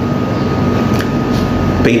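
Steady background hum and hiss with a thin high whine, and a faint click about halfway through.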